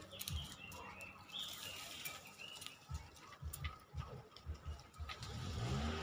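Outdoor ambience with a few short bird chirps and irregular low rumbling bumps on the microphone. A vehicle engine rises in pitch near the end.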